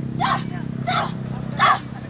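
A dog barking three times in short, sharp barks, over a steady low hum.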